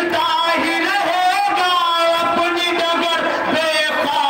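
A man singing a noha, an Urdu Muharram lament, into a microphone. His voice carries long, wavering held notes that glide between pitches.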